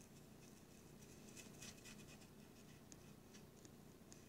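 Near silence, with faint, irregular light scratches and ticks of a miniature paintbrush dabbing black paint onto a thin wooden cutout.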